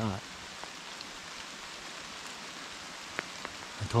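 Steady rain falling, with a few single drops striking close by near the end.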